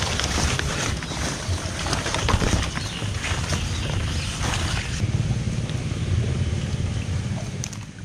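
Wind noise buffeting a handheld camera's microphone, a continuous low rumble, with crackly rustling as people brush through large, wet elephant-ear plant leaves. The sound eases off just before the end.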